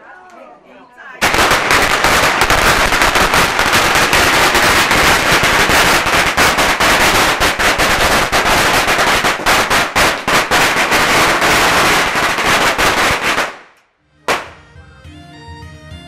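A long string of firecrackers going off in loud, dense, rapid crackling, set off in celebration. It starts about a second in, runs for about twelve seconds and dies away, and music begins near the end.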